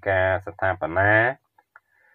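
A man's narrating voice speaking for about the first second and a half, then stopping.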